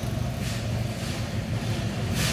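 A steady low rumble, with a soft scrape about half a second in as a mackerel is handled on a plastic cutting board.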